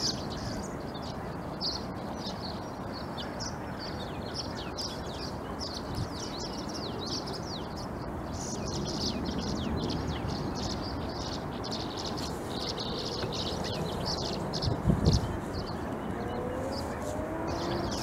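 Many small birds chirping in quick, overlapping calls over a steady outdoor background hiss. A low thump about fifteen seconds in is the loudest sound, and a few lower, gliding calls start near the end.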